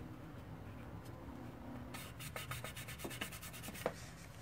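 Faint paper handling: black cardstock and tissue tape being worked by hand on a cutting mat, turning from about two seconds in into a quick run of dry crackling and rubbing.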